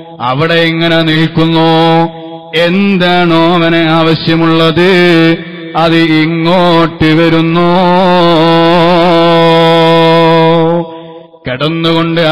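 A man's voice chanting a melodic recitation in long held phrases with wavering, ornamented notes. It breaks off briefly between phrases, the longest running about five seconds.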